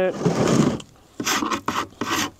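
Hook end of a steel hive tool scraping brittle propolis and beeswax off the wooden edge of a deep hive body, in short rasping strokes, with a brief pause about a second in.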